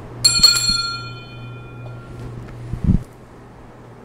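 Altar bell rung at the consecration of the host, a bright ring of several high tones that dies away over about two seconds. A steady low hum runs underneath, and there is a knock near the end.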